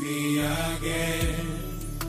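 A man singing a gospel song live into a handheld microphone, holding a long note over backing music with a deep, steady bass and a drum beat.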